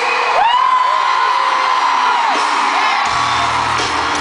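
Arena concert crowd cheering, with one long high voice note held for about two seconds; about three seconds in, a low bass line from the band comes in as the song starts.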